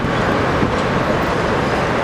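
Steady road traffic noise: the even rush of a motor vehicle going by close to the street.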